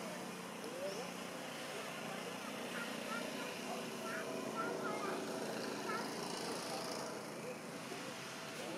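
Indistinct background voices with outdoor ambience, joined by a few faint short high chirps in the middle.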